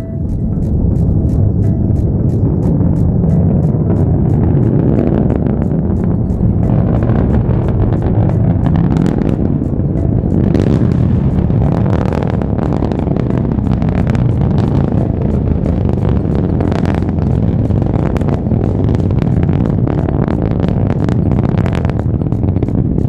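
Deep, steady rumbling roar of a rocket launch, mixed with background music that has a regular beat.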